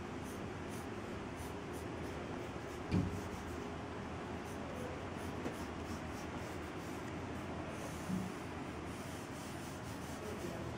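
Pencil scratching across drawing paper in short sketching strokes, with a brief knock about three seconds in and a softer bump near the end.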